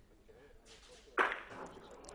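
A thrown bocce ball strikes the target ball in a shot: one sharp clack about a second in, with a short ringing tail.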